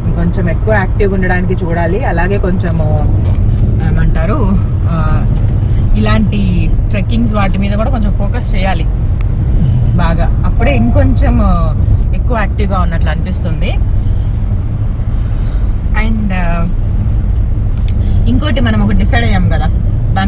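Steady low rumble of a car being driven, heard from inside the cabin, with conversation going on over it.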